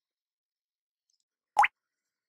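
Silence, then near the end a single short electronic blip that glides quickly upward in pitch: a transition sound effect leading into the closing logo.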